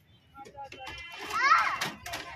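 Children playing, with scattered short calls, then one loud, high-pitched child's shout or squeal about a second and a half in.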